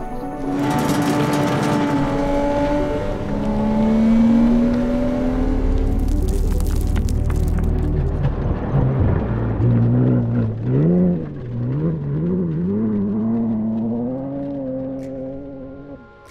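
Background music mixed with a car engine revving, its pitch climbing in long pulls early on, then rising and falling over and over in the second half.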